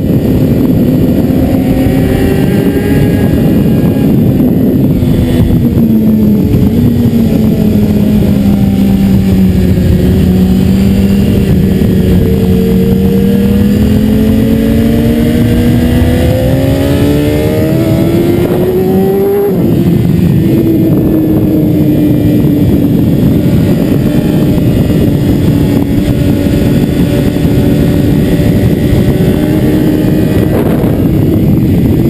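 BMW S 1000 RR's inline-four engine at speed under a heavy rush of wind on the microphone. Its note sags, then climbs steadily under acceleration. About two-thirds through it drops sharply at a gearchange and holds a steady pitch.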